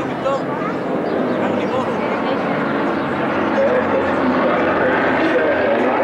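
A formation of vintage piston-engined propeller aircraft flying overhead, their engines droning together and growing louder as they pass.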